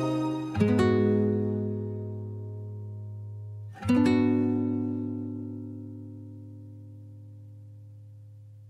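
Instrumental backing track of a Korean pop ballad, with no vocals: a sustained chord struck about half a second in and another a little before the four-second mark, each left to ring and slowly fade.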